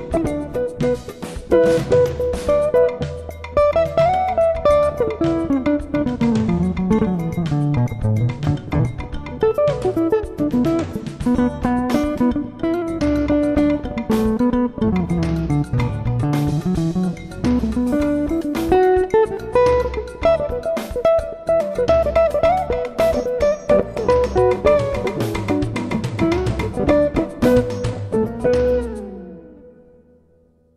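D'Angelico Premier SS semi-hollowbody electric guitar played in a jazz style: fast single-note runs that sweep down and back up in pitch, over a low bass line. The playing fades out near the end.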